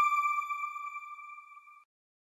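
A single high electronic chime tone from a TV channel's logo ident, ringing out and fading away, then cutting off abruptly just before the end.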